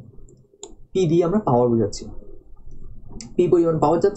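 A person lecturing in Bengali, speaking in two short phrases, with a few sharp clicks in the pauses between them.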